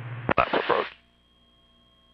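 Aircraft VHF radio squelch tail: a click as a transmission drops off, then a brief loud burst of static that cuts off under a second in. After it comes a faint steady electrical hum from the radio audio feed.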